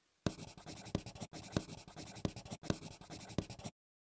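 Sound effect of a pen writing on paper: scratchy strokes a few times a second in three even stretches, cutting off abruptly near the end.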